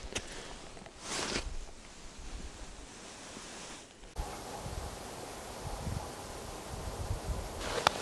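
Quiet outdoor background of faint wind hiss and rustling, with a short louder rustle about a second in.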